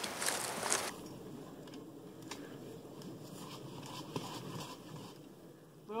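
A short burst of rustling noise, then a quiet outdoor background with a few faint knocks.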